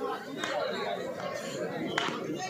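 Spectators chattering, many voices overlapping with no clear words. There is a faint click about half a second in and a sharper knock near the end.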